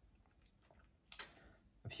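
Near silence: room tone, with one faint brief sound a little past a second in and a spoken word starting at the very end.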